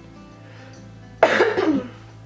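A girl coughs once, short and loud, a little over a second in; she has a sore throat. Quiet background music plays underneath.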